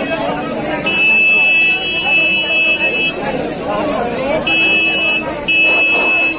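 A horn-like tone sounding in three blasts over crowd chatter: a long blast about a second in, then two short ones near the end.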